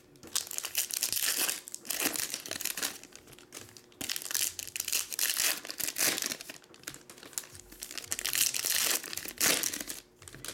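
Foil trading-card pack wrappers crinkling as they are opened and handled, in repeated bursts with short pauses between.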